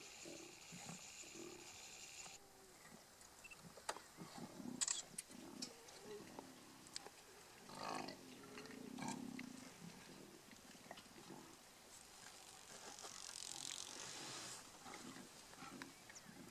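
Lions growling over a buffalo carcass, faint low growls scattered throughout with a louder one about eight to nine seconds in.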